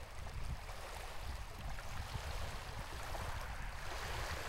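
Small waves lapping and splashing at the shoreline over wet eelgrass: a steady watery wash with a low, uneven rumble underneath.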